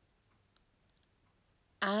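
Mostly quiet, with a few faint light clicks about a second in, then a woman starts speaking near the end.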